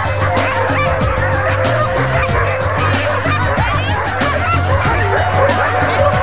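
A crowd of sled dogs barking, yelping and howling all at once, an unbroken excited chorus from many animals, over a steady low hum.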